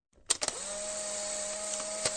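A steady mechanical whir of a small electric motor, lasting about two seconds. It opens with a couple of sharp clicks and rises briefly in pitch. Near the end it drops in pitch with further clicks, then cuts off suddenly.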